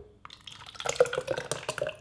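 Thick tomato mixture poured from a glass measuring jug into a plastic blender cup, splashing and glugging in a run of short, irregular plops.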